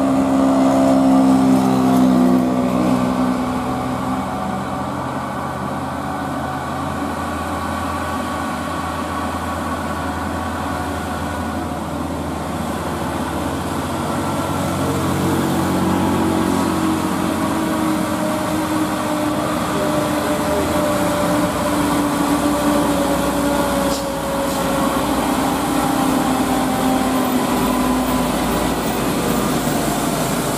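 Diesel engines of loaded Mitsubishi Canter dump trucks labouring up a steep climb under a full bed of sand, one truck close by at the start and a second one building in the middle and staying loud, its engine note slowly rising and falling.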